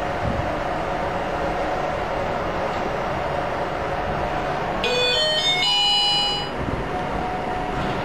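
Hyundai YZER machine-room-less elevator car travelling upward, heard from inside the cab as a steady ride hum. About five seconds in, an electronic arrival chime plays a short run of stepped tones lasting about a second and a half.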